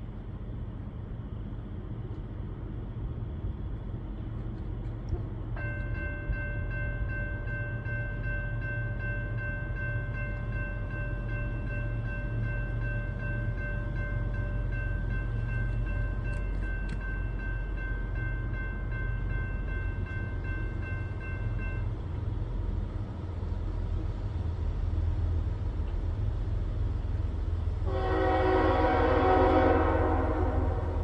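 An approaching train: a low rumble that slowly grows louder, with the locomotive's horn sounding one long, steady chord from about five seconds in until about twenty-two seconds. Near the end a louder, fuller horn blast comes in.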